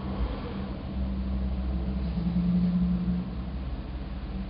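Steady low mechanical hum with a held tone that steps slightly lower in pitch and grows stronger about two seconds in, then eases off a little after three seconds.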